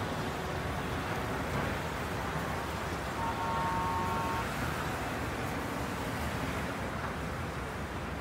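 Street traffic ambience: a steady rumble and hiss of passing vehicles. About three seconds in, a faint high steady tone sounds for about a second.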